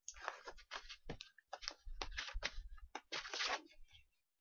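Sheets of construction paper rustling as they are handled and shuffled, in a run of irregular scratchy bursts.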